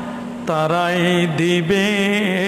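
A man's voice chanting in a melodic, drawn-out style into a microphone, as in waz preaching. After a short breath about half a second in, he holds long notes that waver in pitch.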